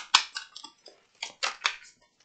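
A deck of tarot cards being shuffled by hand: a run of short, crisp card strokes, several a second.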